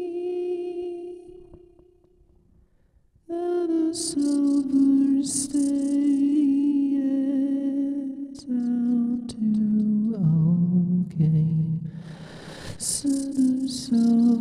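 Wordless singing of a slow melody: a held note fades away, there is a second of near silence, then the voice picks the melody up again about three seconds in, with breathy hisses between phrases.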